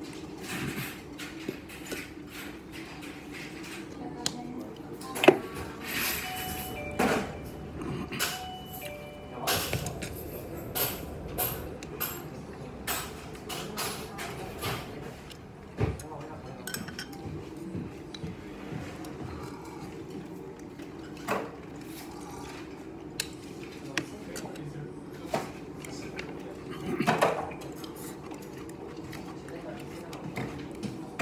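Chopsticks clicking and clinking against ceramic bowls and plates during a meal, a scattering of sharp clinks with the loudest about five seconds in. Underneath runs a steady background of voices and music.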